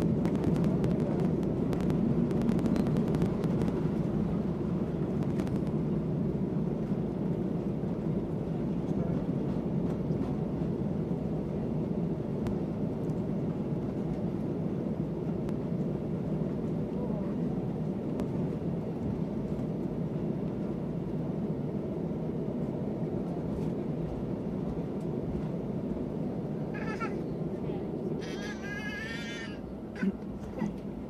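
Cabin noise of an Embraer ERJ-195 airliner rolling along the runway: a steady low rumble of its turbofan engines and the rolling, fading gradually as the jet slows. Near the end, a brief high-pitched cry is heard twice.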